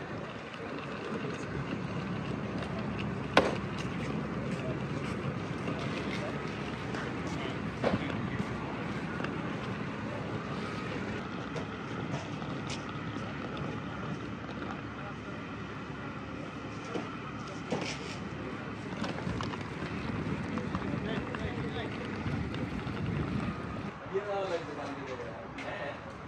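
Outdoor ambience: wind on the microphone with indistinct voices in the background and a few sharp clicks, the clearest about three and a half seconds and eight seconds in.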